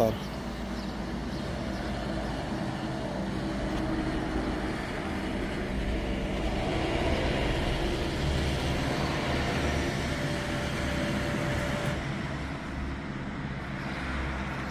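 Steady low rumble of motor vehicles running, a car engine and traffic noise, with no sudden events.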